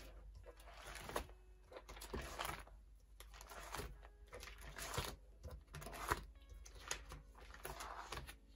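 Plastic pocket pages of a photocard binder being turned one after another, each turn a brief crinkling swish of the plastic sleeves, roughly one a second.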